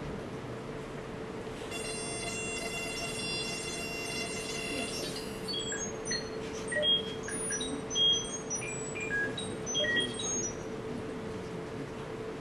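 Electronic tones from a Pure Data patch played through the hall's speakers: a steady mid-pitched sine-like tone held throughout. A brighter, buzzy tone with many overtones joins it for about three seconds near the start, then short high beeps at scattered pitches sound in the second half.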